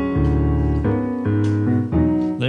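Digital stage piano playing a slow progression of sustained chords, changing chord about three times.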